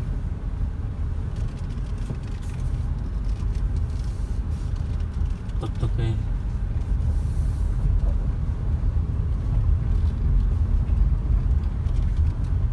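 Car cabin noise while driving slowly on a dirt and gravel road: a steady low rumble of engine and tyres.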